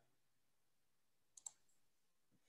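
Near silence, broken by a computer mouse button clicking twice in quick succession about one and a half seconds in.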